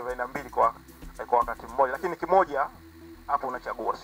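A man speaking into a handheld microphone, with a short pause a little before the end.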